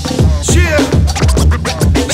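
Hip hop beat intro: turntable scratches sweeping up and down in pitch over a heavy kick drum that hits about twice a second.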